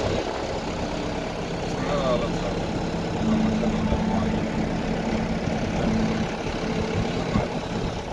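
Engine and road noise of a moving vehicle heard from inside, steady throughout, with a low hum that grows stronger about three seconds in.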